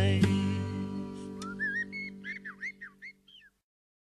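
Closing guitar chord of a song fading out under a recorded blackbird singing, a string of short gliding chirps. The track ends about three and a half seconds in and drops to silence.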